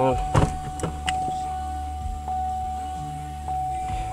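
A few short clicks as the rotary knob of a Pioneer DEH-3400UB car stereo is turned through its audio menu. Under them runs a steady low hum with a thin, steady high whine.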